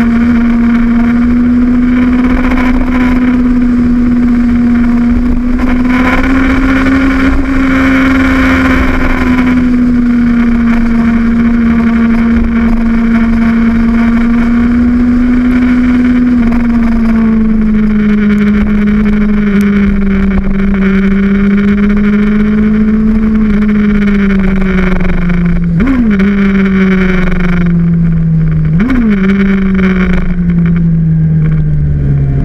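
On-board sound of a Suzuki GSX-R1000 sport motorcycle's inline-four engine running hard under wind rush, holding a steady high note through the bends. Past halfway the pitch drops and keeps sliding lower as the bike slows, with two quick throttle blips near the end.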